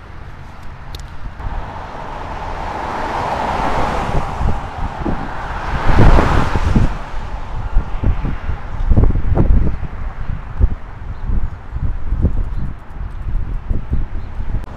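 A road vehicle passing close by: its tyre and engine noise builds over several seconds, peaks about six seconds in, then fades. Gusts of wind buffet the microphone through the second half.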